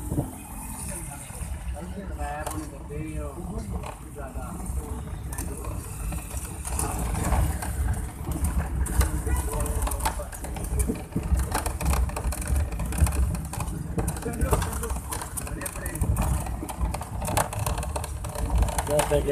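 Ride inside a moving vehicle on a wet road: a steady low engine-and-road rumble with tyre hiss and scattered clicks and rattles, with indistinct voices now and then.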